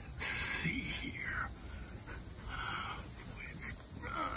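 A man speaking softly and indistinctly, with a short loud hiss about a quarter second in.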